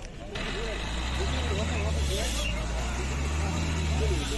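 A motor vehicle's engine running close by: a low, steady drone that starts suddenly about a third of a second in, with people talking in the background.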